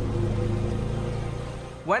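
A low, steady droning rumble with a couple of held tones, typical of a documentary's background score, fading gradually. A man's voice comes in near the end.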